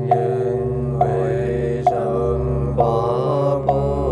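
Buddhist mantra chanted to music: a sung voice over a steady drone, with a sharp struck beat about once a second.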